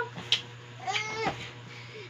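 A single short, high-pitched squeal from a young child about a second in, after a light tap near the start.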